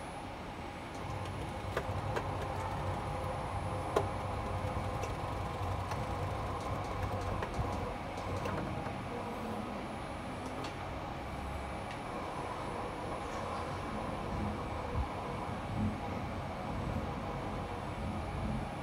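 Syil X5 CNC milling machine running with a steady low mechanical hum and rumble, with one sharp click about four seconds in and a couple of small knocks near the end.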